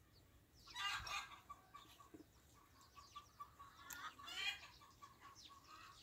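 Chickens clucking faintly in two short bouts, one about a second in and another around four seconds in, with a faint steady high tone between them.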